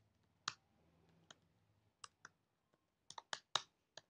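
Computer keyboard keystrokes as text is typed: faint, irregular clicks, a few spread out early on and a quicker run of them in the second half.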